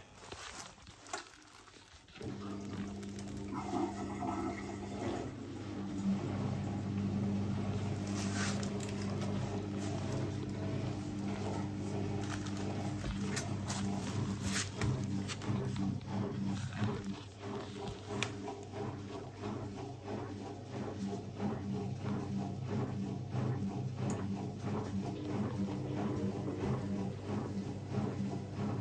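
Zanussi ZWT71401WA washer-dryer starting a spin-only cycle about two seconds in: a steady machine hum as water drains, with the drum turning the two soaking-wet towels over in irregular knocks and sloshes while it tries to balance the load before spinning up.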